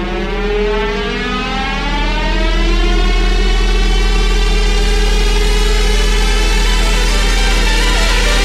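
Electronic dance music build-up: a synth riser with many tones climbs steadily in pitch over a sustained deep bass. It swells louder about two seconds in.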